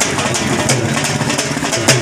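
Street-procession drumming: a large drum beaten in a steady rhythm of about three strokes a second, mixed with other music.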